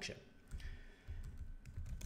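A few soft computer keyboard keystrokes during code editing, over a low steady rumble of microphone and room noise.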